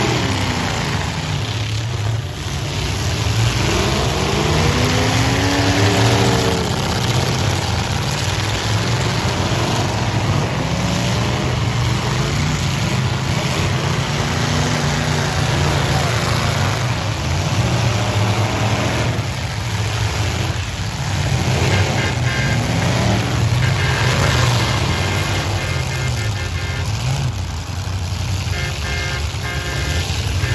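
Several demolition derby cars' engines revving hard, their pitch rising and falling, with occasional sudden crashes of the cars ramming each other.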